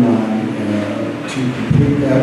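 A man's voice talking into a handheld microphone, with a short low bump near the end.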